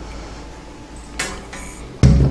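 The plastic base of a smart table lamp is set down on a glass tabletop, giving a single light clink with a brief high ring a little over a second in, over faint room noise.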